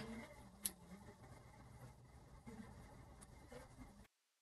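Near silence: faint room tone, with one soft click a little over half a second in.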